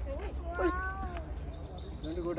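A young child's high-pitched voice calling out in short gliding squeals, with thin high bird whistles behind it.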